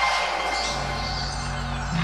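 Electronic transition jingle for a TV sports section title: a noisy swelling sweep over a low held bass note that steps up in pitch about two-thirds of a second in.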